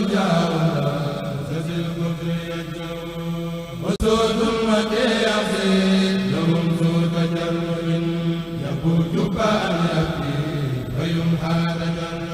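Devotional chanting of Arabic religious verse: a voice holding long, drawn-out notes that shift slowly in pitch, with a brief break about four seconds in.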